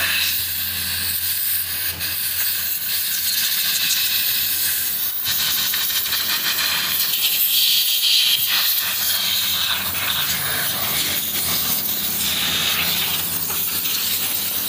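Compressed-air blow gun hissing steadily as its jet blasts dust out of a deeply carved wooden panel, the hiss swelling and easing as the nozzle moves over the carving.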